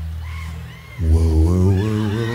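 Live concert sound between songs: a held low note from the band fades out, then about a second in a deep man's voice lets out a loud, wavering, pitch-bending call.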